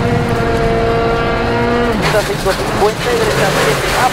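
Hyundai i20 WRC rally car's turbocharged four-cylinder engine heard from inside the cabin, held at a steady high pitch for about two seconds, then dropping sharply in pitch. A co-driver's voice calling pace notes comes in over it in the second half.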